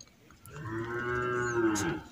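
A single long, low, steady call, starting about half a second in and held for well over a second with a slight rise and fall in pitch.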